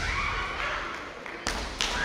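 A few sharp knocks, one at the start and two more about a second and a half later, over a steady murmur of crowd noise in a large hall.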